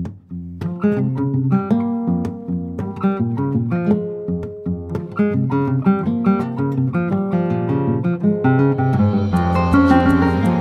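Classical guitar and plucked-string ensemble playing a lively instrumental piece, quick plucked notes over a plucked bass line. The texture fills out about half a second in, and more instruments join higher up near the end.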